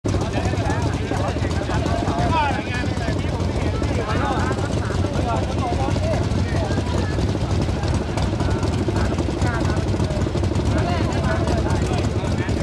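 A motorcycle engine running steadily, a low rapid throb that neither rises nor falls. People talk over it.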